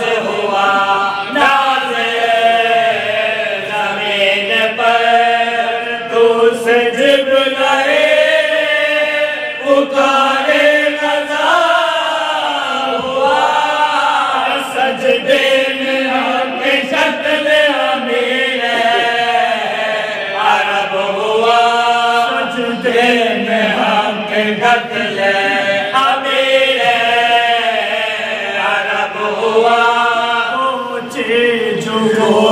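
A group of men chanting an Urdu marsiya (elegy for the martyrs of Karbala) together in unison, unaccompanied, with a melody that rises and falls through long held lines.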